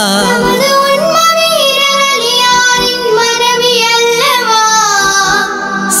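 Children singing a Tamil Muslim devotional song (mappilappattu style) together, drawing out long held notes with wavering, ornamented turns.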